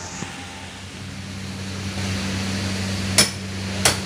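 Rain falling steadily on wet pavement over a steady low hum. Two sharp knocks come a little over three seconds in, about half a second apart.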